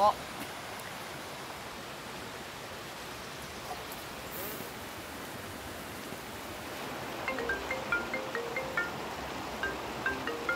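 Steady rushing outdoor noise like a nearby stream. From about seven seconds in, a mobile phone ringtone starts: a repeating run of short, bright plucked notes.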